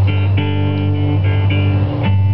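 Live acoustic music: guitar chords struck several times over a sustained low note.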